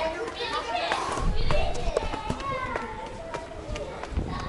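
Background voices of visitors, children among them, talking with no one voice in front, with a few sharp clicks and a brief low rumble a little after a second in.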